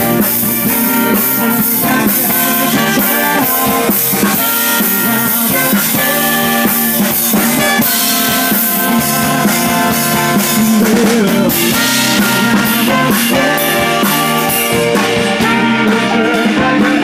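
A live band playing: a horn section of saxophones and trumpet over keyboard, electric bass and a drum kit keeping a steady beat.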